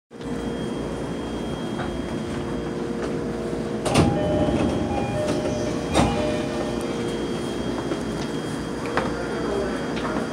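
Inside a train carriage: a steady rumble and hum, with two sharp knocks about four and six seconds in and a lighter one near the end.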